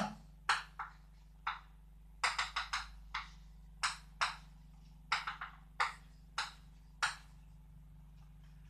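Chalk on a blackboard while mathematical notation is written: about a dozen short, sharp taps and strokes, some single and some in quick clusters, with a steady low hum underneath.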